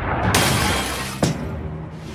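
Cartoon sound effect of glass shattering, starting suddenly about a third of a second in and fading away, with a second sharp crack a second later, over background music.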